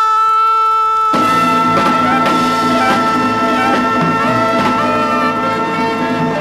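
Closing bars of a 1960s jazz and R&B band arrangement. A single note is held, then about a second in the full band with brass comes in on one long sustained final chord.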